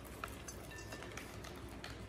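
Slivered almonds sprinkled by hand into a salad bowl, landing on spinach leaves and strawberry slices with faint, scattered light ticks.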